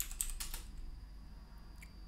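Typing on a computer keyboard: a quick run of keystrokes in the first half-second or so, then a single faint key press near the end.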